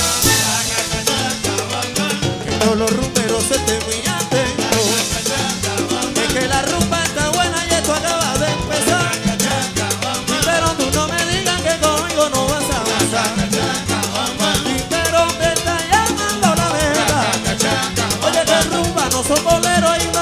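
Live Cuban timba band playing: a dense, steady dance rhythm of drums and percussion under a bass line and melodic instrument lines.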